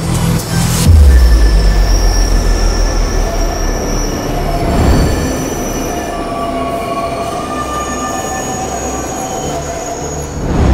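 Train wheels squealing in a station: several steady high squealing tones over a rumble that comes in about a second in and slowly fades, with music underneath.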